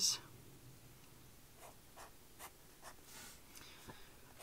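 Pen drawing on notebook paper: a run of short, faint scratching strokes, a few each second, as small squares are drawn.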